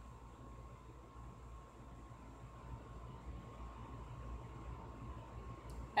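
Quiet room tone: a steady low hum with a faint thin whine and an even hiss, with no distinct events.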